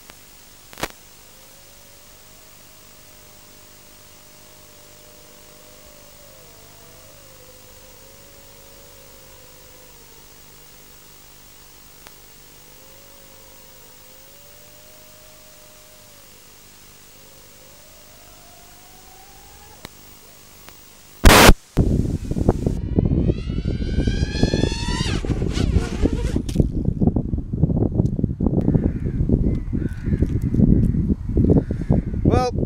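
Faint steady hiss of an FPV video-link recording, with a faint wavering tone. About 21 seconds in there is a sudden loud burst, then loud, gusty wind noise on a microphone, with a brief gliding whine in it.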